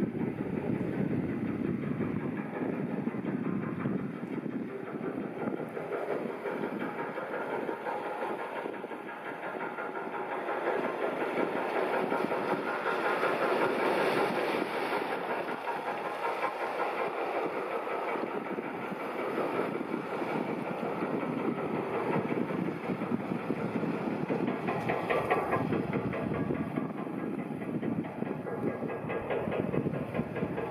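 High-speed catamaran ferry's engines heard across the water, a steady rumble with a fast pulsing beat that swells somewhat around the middle as the ferry passes.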